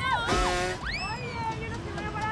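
Excited, high-pitched voices shouting and squealing over background music, with a brief noisy burst about a third of a second in.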